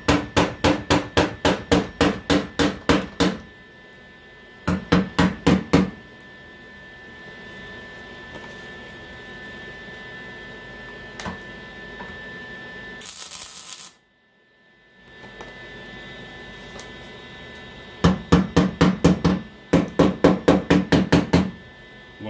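Rapid hammer taps on thin car-body sheet metal, about four a second in several runs, tapping a welded-in patch panel's edge flush with the fender. Between the runs there is a steady low hum and, about halfway through, a brief hiss.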